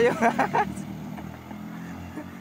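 Small motor scooter engines running, a steady low hum, as scooters ride past on the road.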